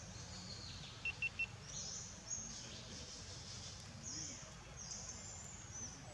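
Birds calling: repeated high, swooping calls and a quick run of three short chirps about a second in, over a low, steady background noise.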